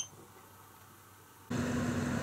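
Near silence, then about a second and a half in, the steady hum of a Chevrolet Silverado pickup carrying a truck camper as it drives up.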